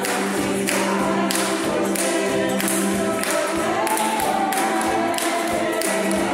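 A small acoustic group plays and sings: ukuleles strummed in a steady rhythm, about two strokes a second, with a tambourine, under several voices singing together.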